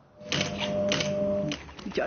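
Rapid clicking over a steady held tone for about a second, then fading: a news-programme transition sound effect.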